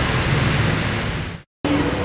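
Steady outdoor noise, an even hiss across all pitches, that cuts off abruptly about one and a half seconds in and resumes a moment later.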